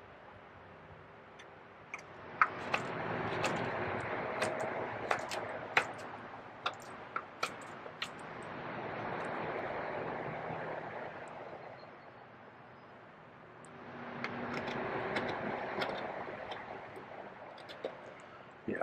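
Small carving knife cutting a wooden spoon, with irregular sharp clicks of the blade slicing off chips. Behind it, a rushing noise swells and fades three times.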